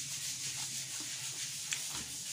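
Steady hiss over a low hum, with a few faint soft clicks of a person chewing a mouthful of food.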